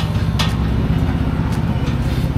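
Steady low rumble of street traffic, with two sharp clicks near the start.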